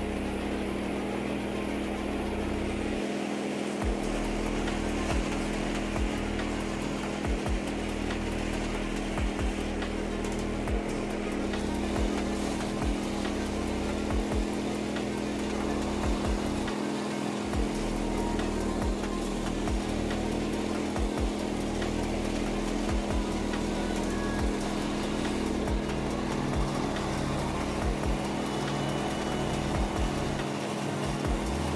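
Cub Cadet XT1 LT46 riding mower's engine running steadily at a constant throttle while it drives over rough grass, with frequent brief low thumps as it bumps along.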